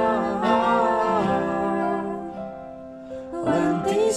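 A small group of singers performing a slow worship song with acoustic guitar accompaniment. The voices hold a long chord that fades about two and a half seconds in, and the singing picks up again just before the end.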